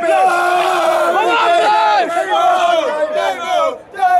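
A small group of football fans shouting and chanting together in celebration. Several men's voices overlap, loud, with held cries that fall off in pitch at their ends.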